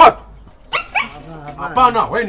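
A dog barking, in short sharp calls.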